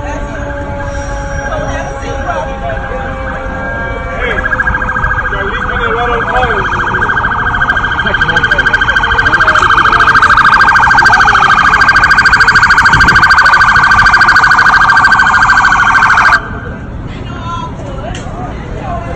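Emergency vehicle siren sounding a fast-pulsing tone. It comes in about four seconds in, grows louder until it dominates, then cuts off abruptly near the end.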